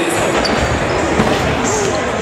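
Basketballs bouncing on a hardwood gym floor, a run of low thuds over a steady babble of voices, echoing in a large gym.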